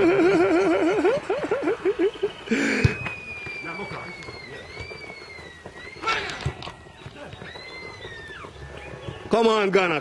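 A spectator's voice holding a long wavering, warbling call that swoops up and down more widely before breaking off. It is followed by a thin, high whistled tone drifting slowly down in pitch for several seconds, and a shout of "come on" right at the end.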